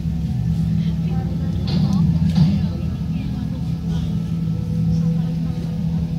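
A steady low hum or drone, with faint voices rising briefly about two seconds in.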